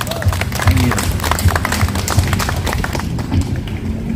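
A small group applauding with hand claps, dying away about three seconds in.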